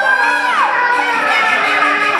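High-pitched, stylized voice of a Taiwanese opera (gezaixi) performer declaiming, with a sweeping fall in pitch about half a second in.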